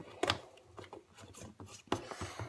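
A plastic spout lid being fitted onto a plastic sippy cup: a few small clicks and knocks of plastic handling, with a sharp click shortly after the start and another near the end.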